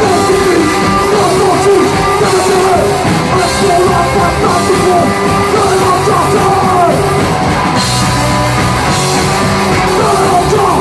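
Live rock band playing loud: shouted lead vocals over electric guitar, bass guitar and saxophone, the sax and voice lines weaving over a dense, steady band sound.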